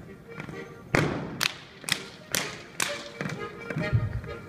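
Schuhplattler dancers' hand slaps on thighs and shoe soles: loud sharp slaps about twice a second from about a second in, over Bavarian folk dance music. A heavy stamp on the wooden dance floor comes near the end.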